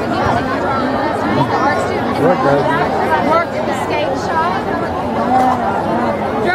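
Crowd chatter: many voices talking over one another at once, steady throughout, with no single speaker standing out.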